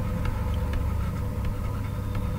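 Steady low background hum with a few faint ticks.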